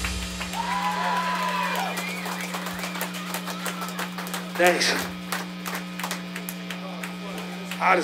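Steady electrical hum from the band's amplifiers and PA between songs, with scattered shouts from voices in the room and one louder shout about halfway through.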